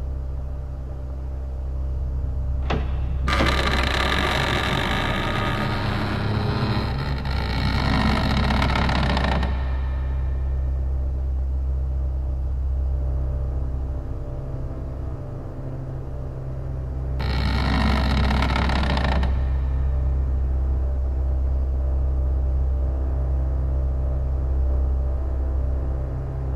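Horror-film sound design: a steady low drone, broken by two loud harsh bursts of noise. The first comes about three seconds in after a short click and lasts about six seconds; the second, shorter one comes in the second half.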